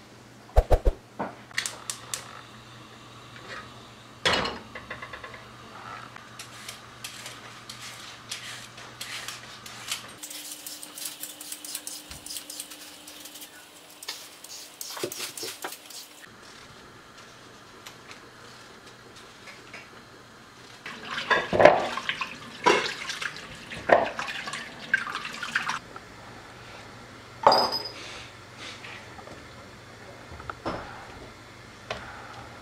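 Kitchen work at the stove: a gas burner being lit, a vegetable peeler scraping along carrots in quick strokes, and enamel pots and a lid clanking, the loudest clatter a little past the middle.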